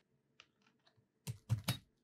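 Probe connector being plugged into the socket of a LEPTOSKOP 2042 coating thickness gauge: a few faint ticks, then three short sharp clicks after about a second.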